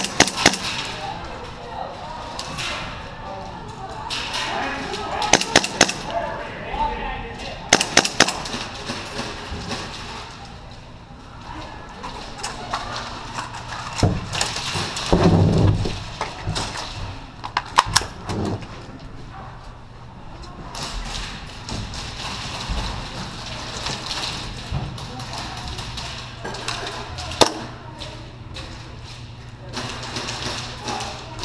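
Airsoft guns firing in short strings of quick, sharp cracks, a few strings spread through the stretch, one string coming about five seconds in and another about eight seconds in.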